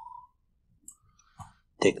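A single short, faint click about a second into a near-silent pause in speech, followed by a faint small sound; the man's voice starts again near the end.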